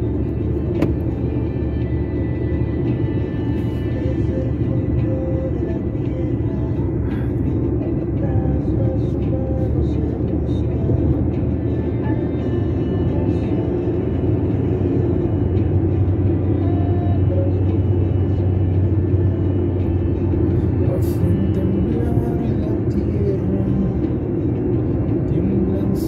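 Car driving at a steady speed: a continuous low rumble of engine and tyres on the road, a little stronger in the middle.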